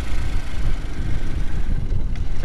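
Loud, gusty low rumble of wind buffeting the microphone, with no clear engine note in it.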